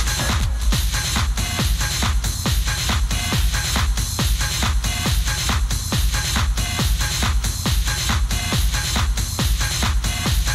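Techno DJ mix: a steady kick drum a little over two beats a second under busy hi-hats and percussion.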